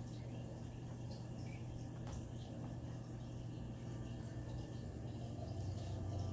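A cat pawing and scratching at a closed door: faint, scattered taps and scrapes over a steady low hum.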